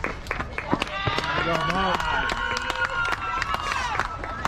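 Spectators and players clapping and cheering with high-pitched shouts as runners score in a softball game; the irregular claps run throughout and the held, high yells swell from about a second in and trail off near the end.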